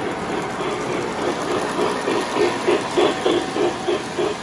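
O-gauge model steam locomotive running with its chuffing sound effect, about four chuffs a second, growing louder as it comes close. Under it is the steady rumble of model trains rolling on three-rail track.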